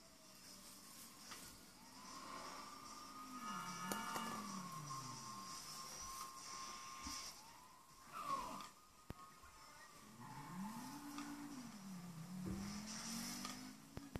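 A cat's low, drawn-out yowl that rises and falls in pitch, heard twice: a few seconds in and again in the second half, each lasting several seconds. A few light clicks fall between the two yowls.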